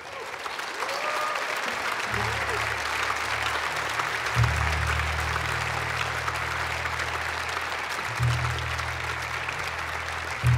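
Audience applauding steadily. About two seconds in, low sustained notes come in underneath and shift pitch twice.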